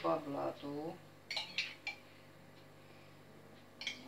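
Metal teaspoon clinking against a small porcelain cup while syrup is spooned out to soak a cake layer: a few sharp clinks about a second and a half in, and one more near the end.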